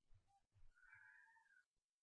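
Near silence: room tone, with a faint, brief cry near the middle.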